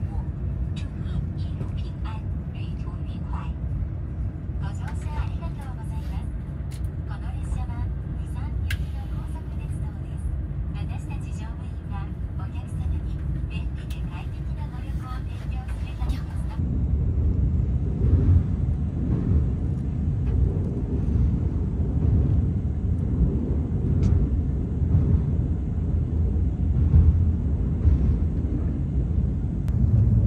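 Cabin rumble of a KTX high-speed train pulling out of the station, with passengers' voices and small clicks over it at first. About halfway through the rumble grows louder and rougher as the train gathers speed.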